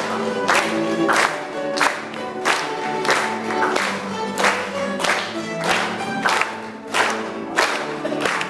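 Music with group singing, and an audience clapping along in time, about three claps every two seconds.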